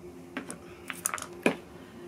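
Small game pieces handled on a tabletop game board: about seven light clicks and taps in the first second and a half, the sharpest about a second and a half in.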